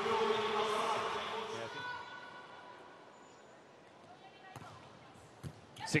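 Arena crowd cheering after a point in an indoor volleyball hall, dying away after about two seconds. Then a quiet hall, with a few sharp knocks near the end.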